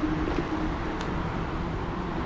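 Steady rolling noise of an e-bike riding along a wet paved trail: tyre and wind rush, with a faint steady hum that fades out in the first second.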